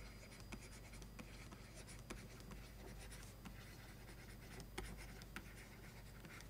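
Faint scratching and light tapping of a pen stylus writing by hand on a tablet, in short irregular strokes.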